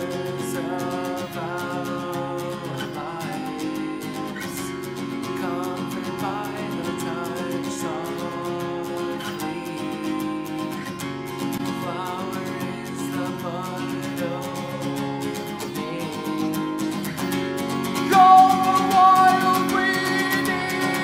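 Acoustic guitar strummed steadily under a man's singing voice. The voice gets louder and higher near the end.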